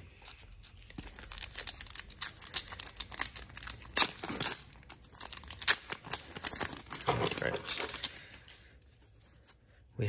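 Foil wrapper of a hockey card pack being torn open and crinkled by hand: a dense run of crackling tears from about a second in, dying away near the end.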